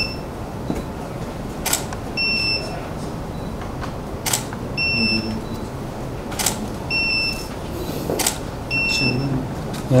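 Camera shutter firing about every two seconds, four shots in all, each followed about half a second later by a short high electronic beep, typical of a studio flash signalling that it has recharged.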